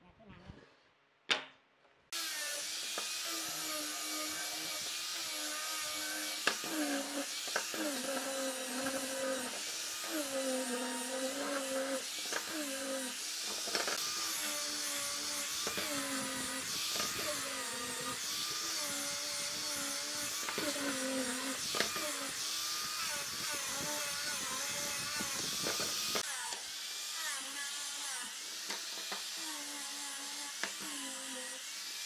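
Angle grinder with a sanding disc running against wooden pieces. Its motor whine starts suddenly about two seconds in and dips in pitch again and again as the disc is pressed into the wood.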